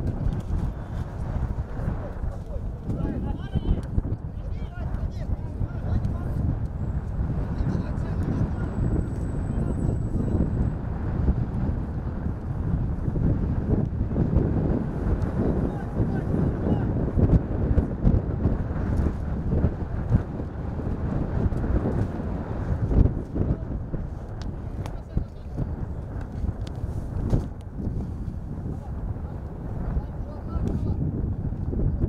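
Open-air football pitch ambience: indistinct voices of players and onlookers shouting, over a steady low rumble of wind on the microphone.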